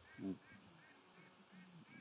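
A quiet pause with faint high chirps repeating every few tenths of a second, and one short low voiced sound about a quarter of a second in.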